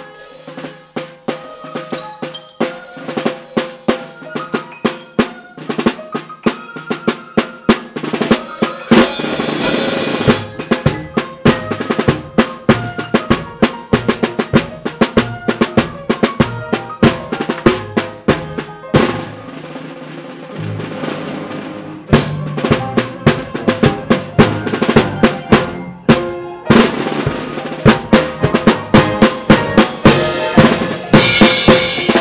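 Drum kit played up close, with snare, bass drum and cymbals, over a band with piano. The drums ease off about nineteen seconds in and come back hard a few seconds later.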